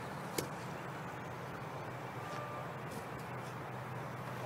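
Steady low outdoor background rumble with one sharp click about half a second in.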